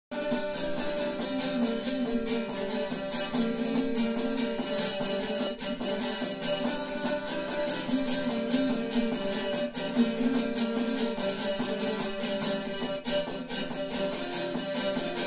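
A solo tamburica, a small pear-shaped plucked lute, playing an instrumental introduction: a single melody line over rapid, even picking.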